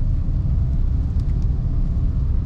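Low, steady rumble of engine and road noise inside a moving Mercedes-Benz W202 C-Class cabin. The cabin is well sealed and measures about sixty decibels.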